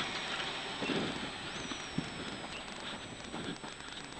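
Rally car driving a gravel stage, heard faintly from inside the cabin: steady engine and tyre noise with a patter of gravel, and a faint high whine that rises about a second and a half in, then slowly falls.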